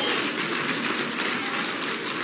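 Audience applauding: a steady clapping that eases off slightly toward the end.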